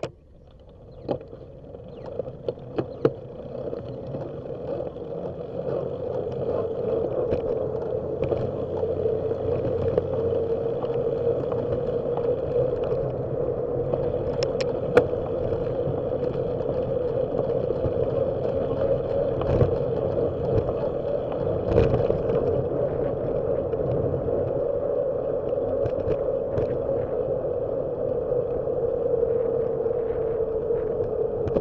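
Wind and tyre noise on a bicycle-mounted camera as the bike pulls away from a stop. The noise rises over the first five seconds or so as the bike picks up speed, then stays steady. There are a few sharp clicks in the first three seconds.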